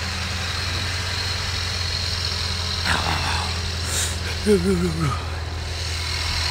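Toyota pickup truck's engine idling steadily with an even low hum, freshly started in the snow.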